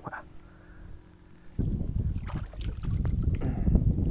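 Muffled, quiet underwater sound from a submerged camera with a faint steady hum. About a second and a half in it gives way abruptly to loud wind rumble on the microphone and water moving around a kayak, with a few small knocks.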